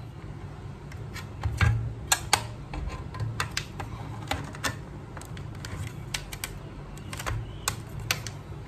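Irregular light clicks and knocks of plastic and sheet metal as the faceplate of an RCD-series car radio head unit is handled and fitted onto its metal chassis.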